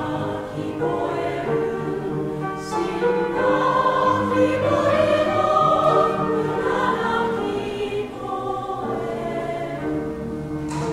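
A choir of women's and men's voices singing in harmony, in long held notes, swelling louder in the middle.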